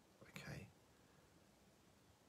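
A man's brief, soft voiced murmur about half a second in, then near silence with faint room tone.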